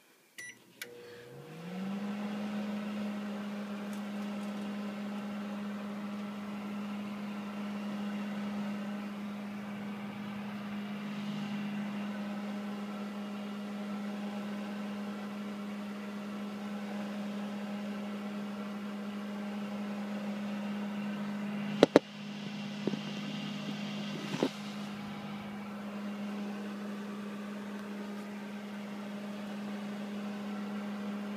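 Microwave oven beeps once as it is started, then its hum rises in pitch over the first couple of seconds and runs steadily while heating popcorn. A few sharp clicks come about two-thirds of the way through.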